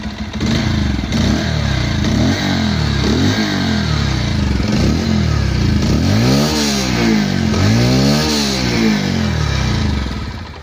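Bajaj Pulsar 150's single-cylinder engine revved through its exhaust while standing: a few short throttle blips, then several bigger revs from about six seconds in, each falling back to idle. The exhaust note has a bit of bass.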